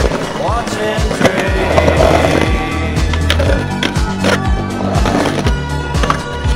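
Skateboard wheels rolling on concrete, with several sharp clacks of the board against the ground, over background music.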